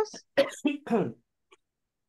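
A person's voice in a few short bursts, ending in a brief laugh.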